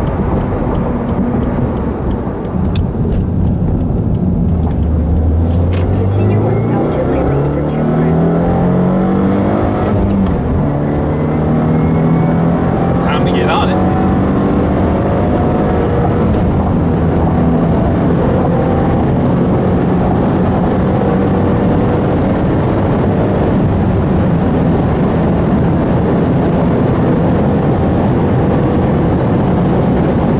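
2015 Subaru WRX's turbocharged 2.0-litre flat-four heard from inside the cabin over road and tyre noise, accelerating: the engine note rises steadily from about four seconds in, breaks off near ten seconds in, then climbs slowly at higher speed.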